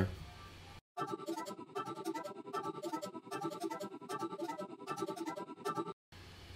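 A looped beat playing back from music software: piano chords run through a tape wow-and-flutter effect, with a steady rhythmic chopping. It starts just under a second in and cuts off abruptly at the end.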